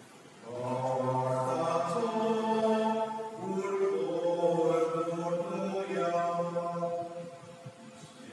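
A priest chanting a sung prayer of the Mass in one male voice, with long held notes. It starts about half a second in, pauses briefly about three seconds in, and trails off near the end.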